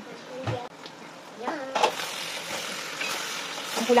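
A wooden spoon stirring pieces of boiled ox tripe and tendon in a pot. A steady, wet, noisy stirring sound starts about halfway through.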